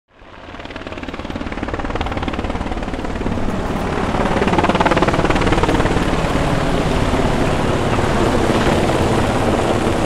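A steady rumbling drone with a fast chopping pulse running through it, fading in over the first couple of seconds and holding steady from about four seconds in.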